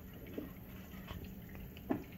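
Kitchen faucet running a thin stream of water onto plastic water bottles in a stainless steel sink, with a couple of light knocks, the sharper one near the end.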